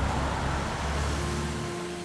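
Steady background traffic noise, a low rumble with hiss, easing off slightly. Soft, sustained music tones come in near the end.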